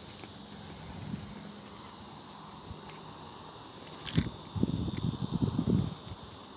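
Insects chirring steadily in the background. About four seconds in comes a sharp click, followed by a second and a half of irregular rustling and scuffing.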